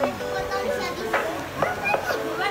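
Excited women's voices chattering and laughing over background music.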